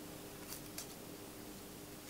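Quiet room tone with a faint steady hum and two faint small clicks, about half a second and just under a second in.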